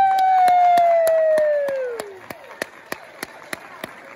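A young girl's voice holding the song's final note into a microphone, the pitch sagging and fading out about two seconds in. Clapping starts at the same time and keeps a steady beat of about three to four claps a second.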